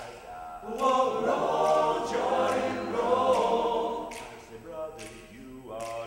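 Male a cappella ensemble singing a traditional spiritual in close harmony, unaccompanied. The voices swell louder about a second in and ease back again about four seconds in.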